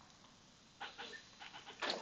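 Faint breathing close to the microphone: near silence, then a few short breathy puffs in the second half.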